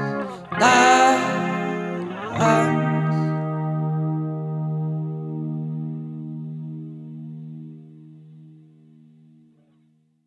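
The ending of a song: a guitar chord struck about half a second in, then a final chord about two and a half seconds in that rings on with a slight wavering shimmer and fades slowly away to silence.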